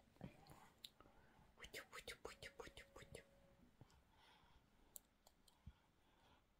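Near silence with faint whispering and a quick run of soft mouth clicks through the middle.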